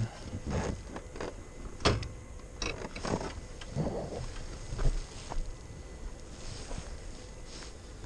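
Scattered rustles, scuffs and knocks as a rider climbs off a parked motorcycle: riding gear brushing and boots scraping on gravel. The engine is off.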